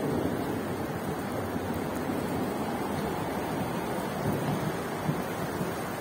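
Rain falling steadily on a wet street, a constant, even wash of noise.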